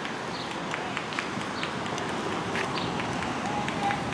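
Footsteps of someone walking outdoors, short irregular steps about two or three a second, over a steady city background noise with faint distant voices.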